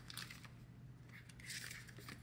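Faint rustling of paper banknotes and plastic binder envelopes as the cash is handled and slid into a pocket.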